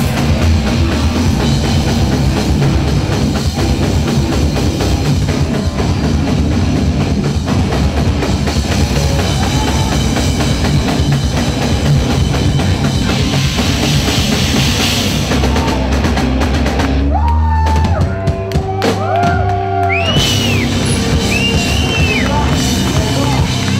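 Live heavy metal band playing loud: distorted electric guitars, bass and a pounding drum kit. About seventeen seconds in the full band thins out for a few seconds, leaving sustained notes that bend up and down over a held low note, before the band comes back in.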